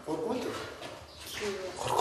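People in the room talking in low, indistinct voices.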